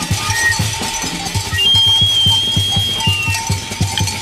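Jazz quartet recording from a free percussion passage. A low drum pulses about four to five times a second under high, thin, whistle-like tones, the longest held for about a second and a half midway through.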